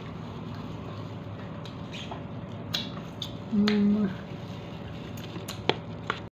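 A few short, sharp crackles of a plastic bag of soup being handled and opened, over a steady background hum, with a short hummed "mm" from a person a little past halfway.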